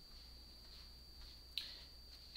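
Quiet room tone with a faint steady high whine, broken about one and a half seconds in by a single sharp click.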